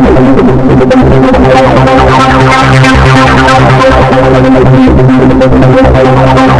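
PoiZone V2 software synthesizer playing an arpeggiated preset through its chorus effect, with chorus depth at full and the chorus rate being turned up near the end. Dense, steady synth tones over a constant low bass, the notes above changing quickly.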